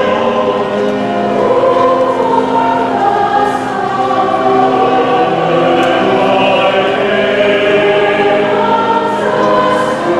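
Mixed church choir of men's and women's voices singing a choral anthem in parts, with long held notes.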